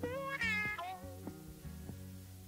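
Closing bars of a laid-back blues-rock recording, fading out: a sliding guitar note glides up and bends in the first second, over plucked guitar notes and bass.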